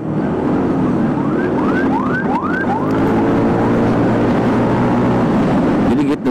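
Yamaha NMAX 155 scooter's single-cylinder engine running under way with wind and road noise, its pitch rising in the second half as it speeds up. A series of about five rising, siren-like whoops sounds between about one and three and a half seconds in.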